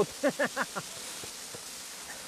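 Steady rush of a waterfall, heard as an even hiss. A few short syllables of a voice, falling in pitch, trail off in the first second.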